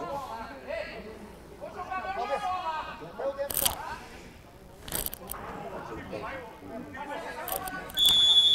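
Faint, distant voices calling out on the football pitch, with a few sharp knocks about three and a half and five seconds in.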